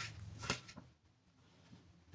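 Two light knocks of a kitchen knife on a wooden cutting board, about half a second apart, as the last spring onion slices are cut and the knife is put down.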